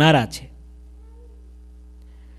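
A man's voice ending a sentence on a drawn-out, falling vowel, which stops about half a second in. After that only a steady low hum remains through the pause.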